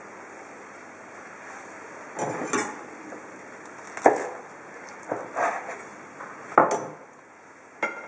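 A chef's knife cutting through a sandwich and knocking down onto a plastic cutting board: a handful of short knocks a second or two apart after a quiet start, the sharpest about four seconds in.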